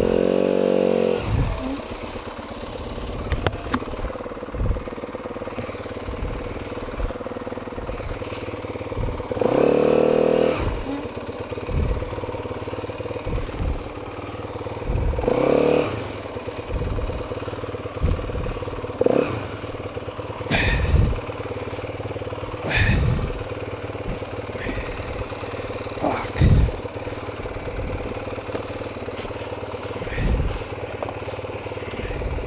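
Dirt bike engine revving at the start, then running at idle with a few short revs, about ten and fifteen seconds in, while the bike sits stopped partway up a steep climb. Scattered knocks and clatter from the bike being handled on the slope, the loudest about twenty and twenty-six seconds in.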